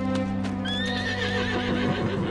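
A horse whinnying, starting about half a second in and lasting over a second, its call wavering and breaking up, over steady sustained background music.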